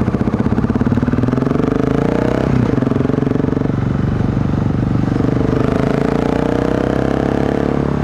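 2008 BMW G650 Xchallenge's single-cylinder thumper engine accelerating through the gears. Its pitch rises, drops at a gear change about two and a half seconds in, then climbs again until another change near the end.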